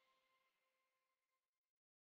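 Near silence: the last faint tail of the background music dying away, then complete silence about two-thirds of the way in.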